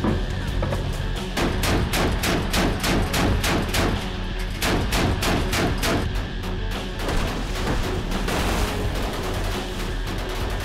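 A warship's deck gun firing in a rapid run of shots, densest from about one and a half seconds in until about six seconds, then more scattered, over background music.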